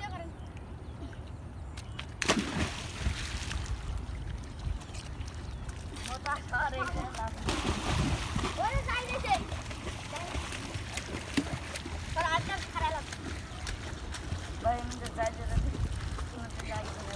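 Boys jumping feet-first into a muddy river, with the splash of each body hitting the water: a sudden one about two seconds in and a longer, churning one around eight seconds. Children's shouts and chatter come in between the jumps.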